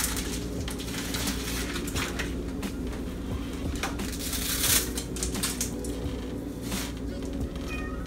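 Dry spaghetti crackling and clicking as it is handled and dropped into a pot, over a steady low hum. A short cat meow comes near the end.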